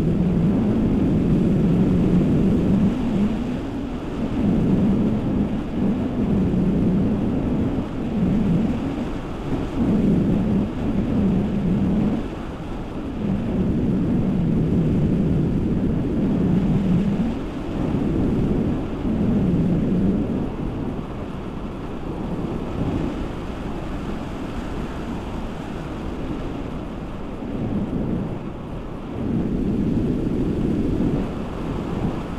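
Wind buffeting the camera microphone in the airflow of paragliding flight: a loud low rumble that swells and fades every second or two, easing off for several seconds near the end.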